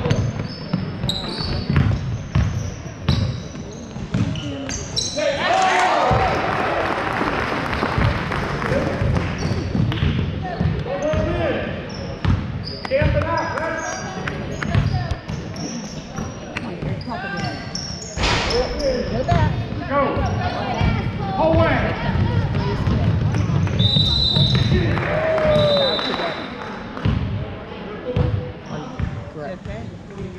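Basketball game in a large gym: a ball bouncing on the hardwood floor amid the players' footwork, with players and spectators calling and shouting in the echoing hall.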